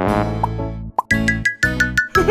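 Instrumental ending of a children's song: held chords with a couple of short rising cartoon pops over them, then about a second in a run of quick staccato notes, about six in a row.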